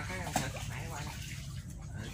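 Shallow muddy floodwater running and splashing around a log in a stream.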